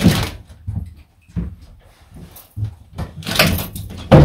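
A closet door is opened with a knock at the start. Then come scattered knocks and rustling, with a louder burst about three and a half seconds in, as a coat on its hanger is taken out of the closet.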